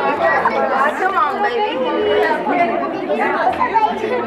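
Overlapping voices of several people chattering at once, none clear enough to make out words.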